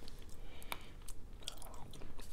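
Quiet close-up chewing of fried buffalo chicken wings, with a few faint crisp clicks of biting and crunching.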